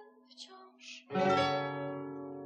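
Acoustic guitar closing a song: a faint held note, then about a second in a full strummed chord that rings out and slowly fades.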